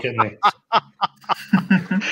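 A man laughing in a quick run of short chuckles.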